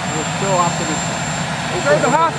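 Steady, loud noise of aircraft turbine engines running, with a thin high whine held on one pitch. A reporter's voice faintly begins a question over it.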